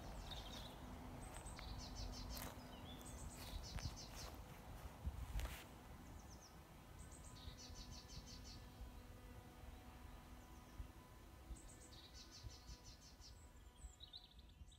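Songbirds singing outdoors, short high trilled phrases repeated every few seconds, over a faint low rumble. There are a couple of soft knocks, about two and a half and five and a half seconds in.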